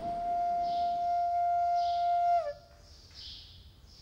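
A single long wind-instrument note, held steady, that bends downward and cuts off about two and a half seconds in.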